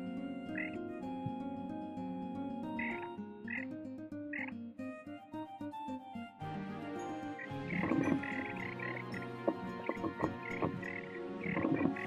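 Soft background music with steady plucked notes. Frogs croak over it, a few short calls in the first half, then a denser chorus of rapid croaking from about halfway.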